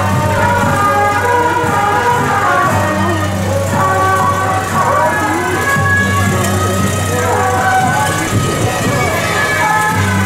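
Temple procession music with a wavering, sliding melody in several overlapping lines, over a steady low hum that drops out briefly a few times, while decorated mini-trucks in the procession roll slowly by.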